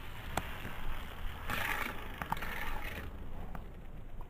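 Die-cast Hot Wheels car rolling along plastic Hot Wheels track: a quiet rolling rumble with a few light clicks.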